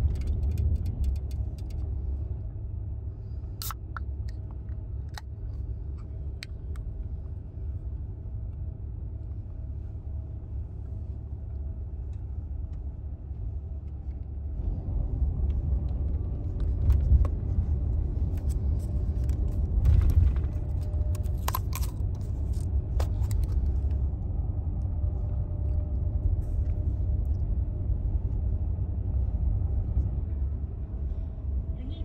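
The low, steady rumble of an overnight highway bus on the road, heard from inside a passenger compartment; it grows louder about halfway through. A few light clicks and knocks come from a drink can being handled and set into a holder.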